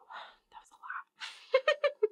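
A woman's quiet whispered, breathy voice sounds in short fragments, ending in a run of about four quick voiced pulses near the end.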